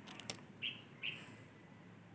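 Faint bird chirping: two short, high chirps about half a second apart, with a couple of faint clicks just before them.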